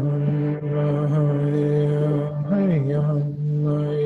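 A man chanting one long, steady low note, like a mantra, that slides briefly up in pitch and back down about two and a half seconds in.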